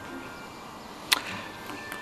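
A pause in the dialogue with faint background sound and a few thin steady tones, broken once, just over a second in, by a single short sharp crack or swish.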